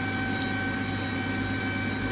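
Steady hum and whine of aircraft ground support equipment, a pneumatic air-start cart (huffer) and a ground power cart, running at a constant pitch and heard from inside the cockpit of a parked Boeing 737-200.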